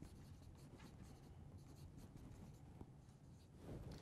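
Faint, quick strokes of a dry-erase marker writing a word on a whiteboard, over a low steady room hum.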